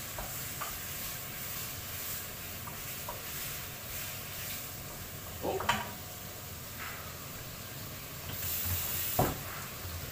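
Chicken pieces sizzling in a frying pan on a gas hob while being stirred with a spatula, with a few light clicks of the utensil against the pan. A louder knock comes near the end.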